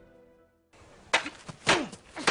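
Film score fades out, then two sharp knocks of wooden practice swords striking each other, about half a second apart.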